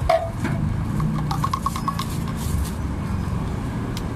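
Steady low rumble of street traffic, with clinks of stainless steel cups being handled and a quick run of light ticks a little over a second in.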